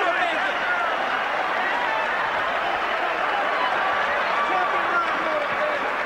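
Boxing arena crowd: a steady din of many voices talking and shouting at once.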